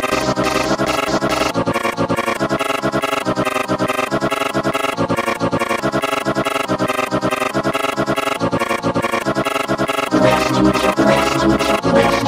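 Sparta-style remix made only from a chopped, vocoded voice clip repeated in a fast, even rhythm, with no backing track. About ten seconds in it gets louder and heavier in the bass.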